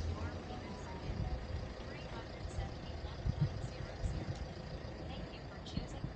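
Faint, indistinct talk over a low, uneven rumble.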